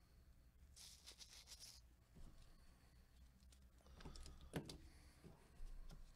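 Near silence, with faint rustling and a few soft clicks as a trading card is handled in gloved hands.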